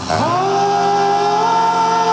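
Male doo-wop vocal group singing live in harmony. The voices swoop up into a chord at the start and then hold it as one long steady note.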